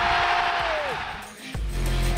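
Stadium crowd noise under one long held note that bends down and stops about a second in, followed by music with a heavy bass beat starting near the end.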